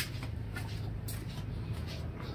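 Faint shuffling and handling noise from someone walking with a phone in hand, over a low steady hum.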